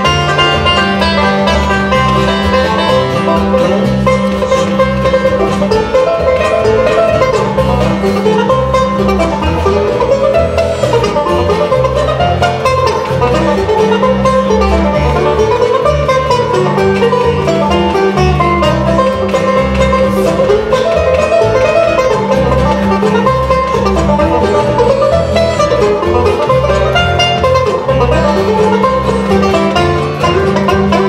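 Live bluegrass instrumental: a five-string resonator banjo picking over acoustic guitar and upright bass, with the bass notes changing in a steady rhythm underneath.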